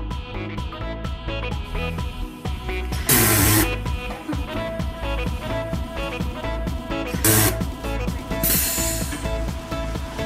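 Upbeat electronic background music with a steady beat, broken by three short, loud hisses of a SodaStream carbonating a bottle of water: about three seconds in, about seven seconds in, and a longer one just before nine seconds.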